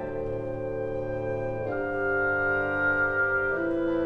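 Orchestra holding sustained chords, with the harmony changing about halfway through and again near the end.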